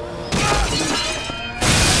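Music playing, then a sudden loud crash of a glass door shattering about one and a half seconds in.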